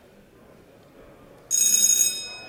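A bell rings once, starting suddenly about one and a half seconds in with a bright, high ring that fades over the next second or so.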